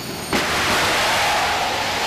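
Test firing of PD AeroSpace's jet/rocket combined-cycle engine: after a brief quieter hiss, it lights with a sudden loud onset about a third of a second in. It then runs with a loud, steady rushing exhaust noise.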